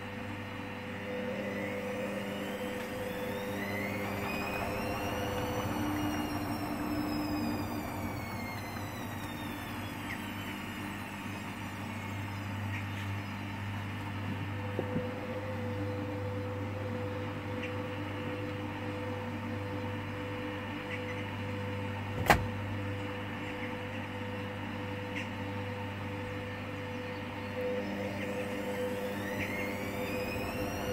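Hoover Dynamic Next washing machine in its drain and intermediate spin at 400 rpm: the drum motor whines up in pitch for about five seconds, then winds back down, over a steady drain-pump hum. One sharp click comes about two-thirds of the way through, and the motor starts whining up again near the end.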